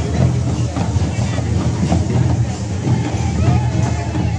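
Hand-played barrel drums beating in a festival procession, with the voices of a crowd mixed in.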